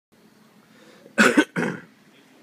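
A person coughing in a quick burst of about three coughs, a little over a second in.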